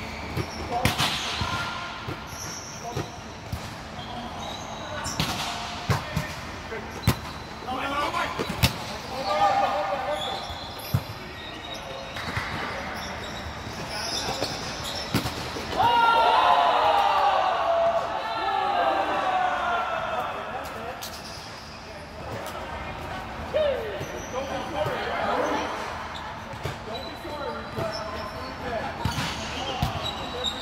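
Sharp slaps of a volleyball being struck and hitting the court at intervals, with players shouting and calling to each other, echoing in a large sports dome. The voices are loudest about sixteen seconds in.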